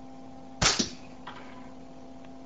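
Edgerton's Boomer firing: its capacitor bank discharges through the coil with a sharp double crack as a spark jumps the gap in a wire loop laid on the coil, followed by a faint click about half a second later.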